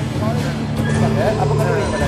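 Voice-like sounds with gliding, bending pitch but no recognisable words, over a steady low drone.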